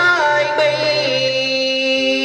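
Cải lương Hồ Quảng singing: a voice holds a long, wavering note into a microphone over instrumental accompaniment. The voice trails off around the middle, and the accompaniment's steady held notes carry on.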